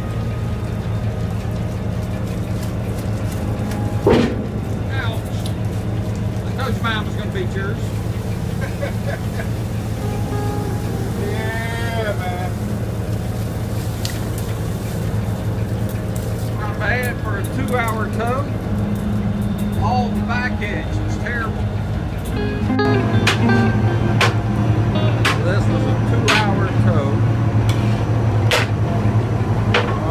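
A fishing boat's engine running steadily with a low drone, with voices and music over it. From about two-thirds of the way in the drone grows a little louder and sharp knocks and clicks come through.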